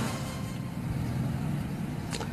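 Steady low background rumble with a faint hum, outdoor ambient noise like distant traffic on a live microphone.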